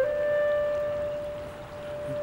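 Soundtrack music: a flute-like wind instrument holds one long note, which fades a little and then swells again near the end.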